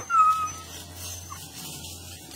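A dog gives one short, high whine near the start, then only faint background noise.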